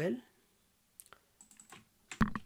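A few faint, short computer keyboard clicks, starting about a second in.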